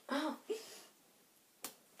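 A child's brief, soft voice, then a single sharp hand slap about one and a half seconds in, as two children's hands meet in a hand-clapping game.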